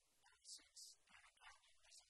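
Near silence, with faint fragments of voices, like distant talk in a large room.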